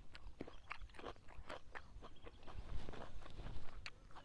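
Close-up chewing of crisp raw vegetables: a string of irregular crunches.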